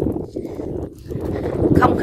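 Small boat under way on the water: an uneven low rumble with irregular knocking, with wind on the microphone. Speech begins near the end.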